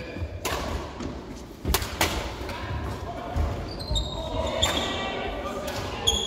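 Badminton rally in an echoing sports hall: sharp racket strikes on the shuttlecock, mostly in the first couple of seconds, over footsteps thudding on the wooden court floor.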